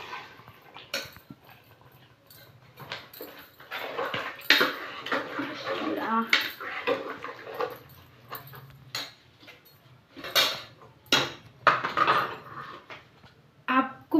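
A spoon stirring cut cluster beans into curry in an aluminium pressure cooker, with scattered clinks and scrapes of metal against the pot. Brief voice-like sounds come in now and then behind it.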